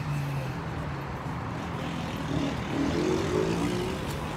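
Road traffic: a motor vehicle's engine humming steadily over road noise.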